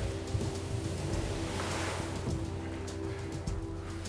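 Background music holding steady low tones, over a soft rushing hiss from a boxful of live worms being poured out. The hiss swells through the middle and fades near the end.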